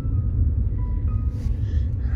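Steady low road rumble of a moving car heard from inside the cabin, with a few faint, short high notes of background music over it.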